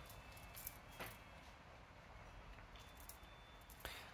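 Near silence: quiet room tone in a pause between words, with a faint click about a second in.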